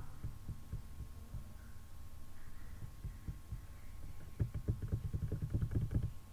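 Soft, low thumps and clicks of a computer keyboard and mouse being worked, picked up by a nearby microphone. They become a rapid run of clicks about four seconds in, over a faint steady electrical whine.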